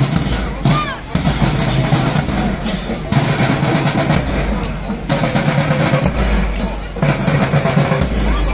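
Marching drum band of bass drums and snare drums playing a marching beat, with voices around it.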